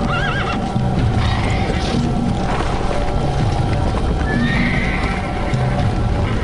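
Horses neighing over a dense din of hoofbeats and music. One whinny with a wavering pitch comes right at the start, and a higher, rising call about four and a half seconds in.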